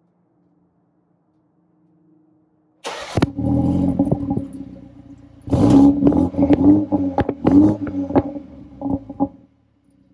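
BMW G20 3 Series engine heard at the exhaust tip with the exhaust flap valve held open: it starts about three seconds in with a loud flare that settles. A few seconds later it is revved several times with sharp crackling pops, then stops abruptly just before the end.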